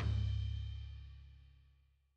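The last chord of a rock song ringing out and dying away, a low bass note and cymbal fading evenly to silence over about two seconds.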